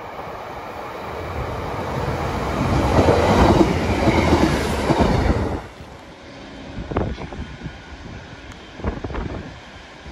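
A Class 150 Sprinter diesel multiple unit passing. The engine and the wheels on the rails grow louder to a peak, then cut off abruptly about halfway through. After that it is much quieter, with a few sharp clicks.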